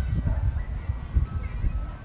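Outdoor ambience: a fluctuating low rumble of wind on the microphone, with a few faint, thin high calls in the background.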